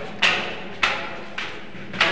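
Footsteps of flip-flops on diamond-plate metal stair treads, about three steps in two seconds, each a sharp slap with an echoing tail in the tall stairwell.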